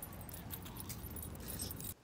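Small metal items jingling: light, irregular clinks, over a steady low outdoor hum.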